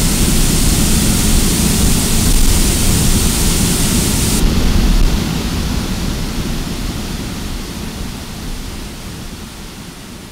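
Steady rushing of whitewater tidal rapids, loud at first and fading gradually from about five seconds in.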